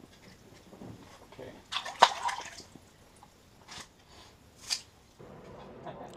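A small fish dropped back into the water of an ice-fishing hole, with a sharp splash about two seconds in, followed by a couple of short, small water sounds.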